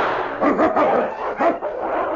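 The fading tail of a rifle shot, then a run of short canine yelps and cries that rise and fall in pitch: a shot wolf in an old radio-drama sound effect.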